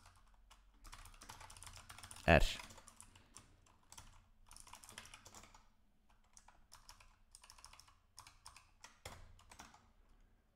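Typing on a computer keyboard: quick key clicks in irregular runs, broken by short pauses.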